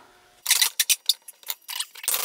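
A run of light, irregular metallic clicks and clinks as a steel screw and a bent bolt are handled and fitted together in a bench vise.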